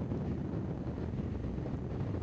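Steady low rumble of wind buffeting the microphone of a camera moving at racing speed alongside road cyclists, mixed with the vehicle's road noise.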